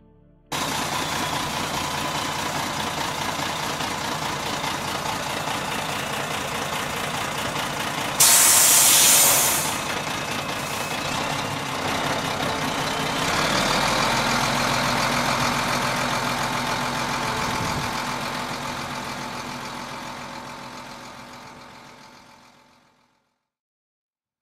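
Diesel dump truck running as it tips a load of earth, with a loud burst of hiss about eight seconds in and a deeper rumble of the load sliding out from about halfway; the sound cuts in suddenly and fades away near the end.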